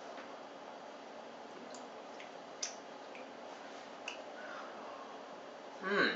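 A few faint lip smacks and mouth clicks from someone silently tasting a sip of IPA, spaced irregularly over a steady room hiss. A short, louder mouth sound comes near the end.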